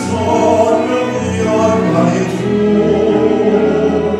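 String quartet of violins, viola and cello bowing a sustained, swelling melody, with piano accompaniment, in a live performance of a slow Italian song.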